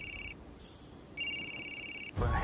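A telephone ringing with an electronic ringtone: one ring stops about a third of a second in and the next starts a little after a second, an incoming call waiting to be answered.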